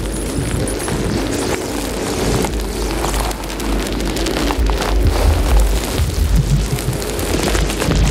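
Live experimental electronic music: a dense crackling noise texture over a heavy sub-bass rumble, the low end swelling about halfway through.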